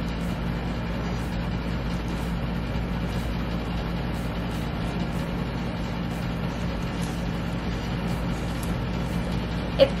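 Steady low hum of room background noise, unchanging throughout, with a few faint light clicks.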